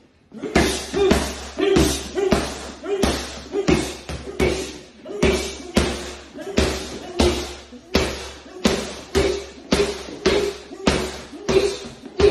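Boxing-glove punches landing on a padded body protector worn by a man, in a steady, even run of about two punches a second.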